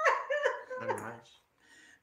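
A man laughing: a few high-pitched, drawn-out laughing sounds that stop about a second and a half in.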